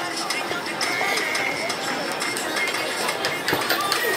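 Busy shopping-street din: background music mixed with the chatter of people around, steady throughout.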